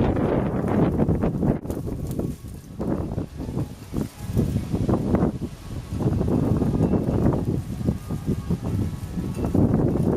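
Wind buffeting the camera microphone in uneven low rumbling gusts, with brief dips around the middle.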